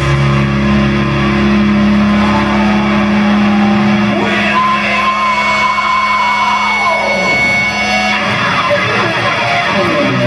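Live heavy metal band holding a distorted electric guitar and bass chord that rings on, with a high guitar note sliding and held above it. The chord stops about seven seconds in, and sliding guitar noise follows.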